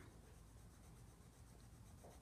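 Very faint scratchy rubbing of a Prismacolor colored pencil shading a swatch on tan sketchbook paper.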